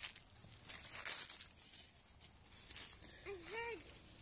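Faint rustling and crinkling of leaves and vines being brushed and moved by hand, loudest about a second in. A brief voice sound comes near the end.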